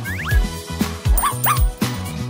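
Upbeat background music with a steady beat, with a small dog's short yips laid over it twice, near the start and again past halfway.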